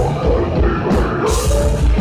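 Heavy metal band playing live and loud: distorted electric guitars and bass over a drum kit, with cymbals ringing out through the second half.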